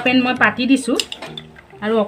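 A few sharp metal clinks of a small steel pan being set on a gas stove's metal burner grate, about half a second and a second in, with a woman's voice over the first half.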